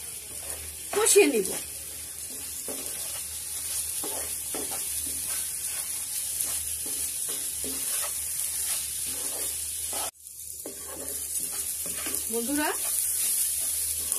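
Wooden spatula stirring and scraping rice and lentils as they roast in oil in a frying pan, over a steady sizzle. A short, louder sound comes about a second in, and the sound cuts out for a moment just after ten seconds.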